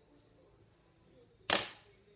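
A single sharp knock or smack about one and a half seconds in, short and loud, dying away quickly over a low room hum.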